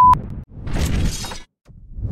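A steady beep cuts off just after the start, followed by a logo-animation sound effect: two noisy bursts about a second each, like glass shattering.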